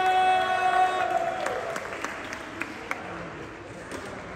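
A loud held high-pitched tone cuts off about a second in, then audience applause with a few scattered claps dies away.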